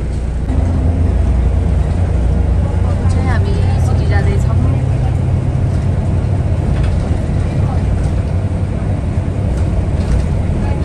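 Bus engine and road noise heard from inside the passenger cabin while the bus drives along: a steady low rumble.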